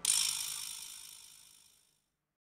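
A sudden high, hiss-like sound effect right after the beat stops, fading out over about a second.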